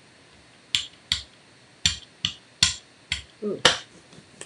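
A series of about seven sharp taps and clicks, roughly half a second apart, from art tools (a brayer and a squeeze bottle of acrylic paint) being handled against a gel printing plate and tabletop.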